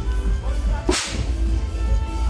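A confetti cannon firing once, a short sharp blast about halfway through, over loud background music with a heavy bass.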